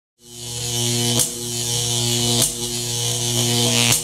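Loud electronic buzzing drone, a low hum with a high hiss over it, fading in just after the start. It is broken by a short glitch roughly every second and a quarter.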